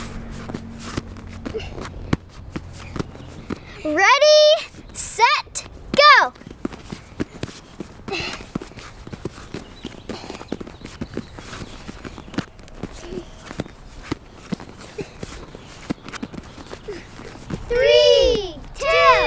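Hands and forearms tapping and slapping on a folding gymnastics mat in quick, irregular taps as children do elbow up-downs, dropping from hands to elbows and pushing back up. A high voice calls out briefly twice, about four and six seconds in.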